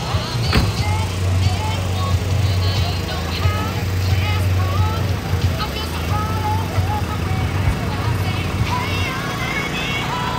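Outdoor car-show crowd ambience: people talking in the background with music playing, over a steady low engine-like rumble that weakens about seven seconds in.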